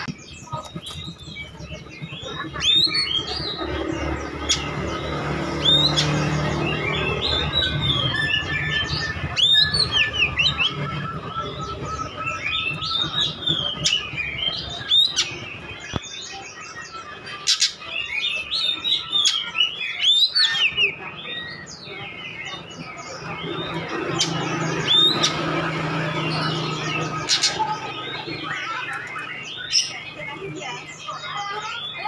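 Oriental magpie-robin (kacer) singing a long, varied song of rising and falling whistles and chirps, with sharp clicking notes scattered through it.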